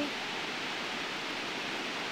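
Steady, even hiss of ocean surf, with no single wave crash standing out.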